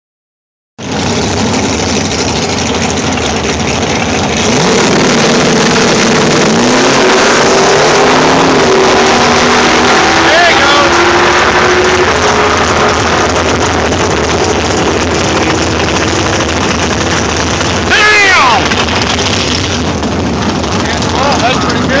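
Drag-racing Camaro running at full throttle down a drag strip, a loud, sustained engine sound that begins abruptly about a second in and grows louder a few seconds later. A few shouts rise over it about halfway through and near the end.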